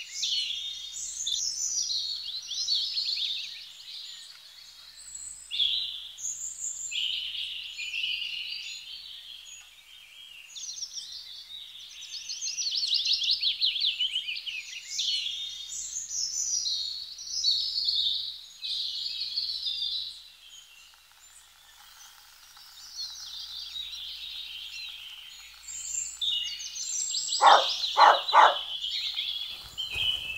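A dense chorus of songbirds chirping and trilling, many calls overlapping, thinning out for several seconds past the middle. Near the end come three short, loud sounds about half a second apart.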